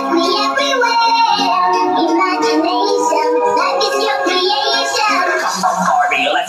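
House music DJ mix playing loud and steady: a high sung vocal over sustained synth chords, thin on bass.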